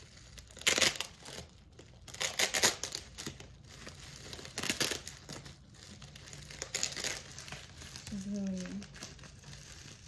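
Plastic bubble wrap crinkling as it is handled and pulled open, in several short bursts of rustling.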